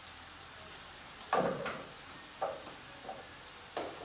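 Knife cuts on a cutting board: four sharp knocks spread over the last three seconds, the first the loudest, over a faint steady sizzle of vegetables frying in a pan.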